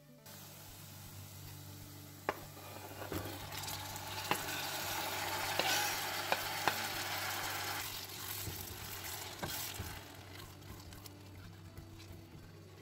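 Chopped onions sizzling in olive oil in a frying pan, with scattered sharp taps of a spatula and knife against the pan. The sizzle swells midway as diced tomatoes are scraped in from a cutting board, then settles back.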